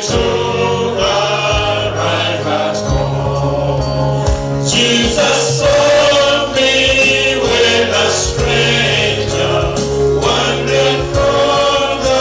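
Men's choir singing together, amplified through handheld microphones, over low sustained bass notes. The singing grows fuller and brighter about five seconds in.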